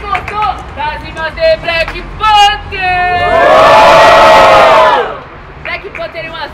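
Crowd of young spectators shouting and whooping in answer to a call for noise for a rap battle MC. About three seconds in, the separate shouts swell into one loud, sustained collective yell that lasts nearly two seconds and then drops off.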